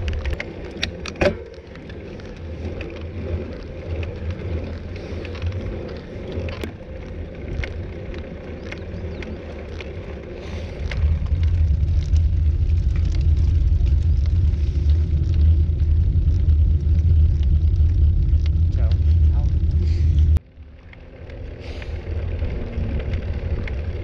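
Low wind buffeting and road rumble on a handlebar-mounted camera's microphone as a road bike climbs, with a sharp knock just over a second in. The rumble grows louder from about halfway, cuts off suddenly near the end, and then builds back more quietly.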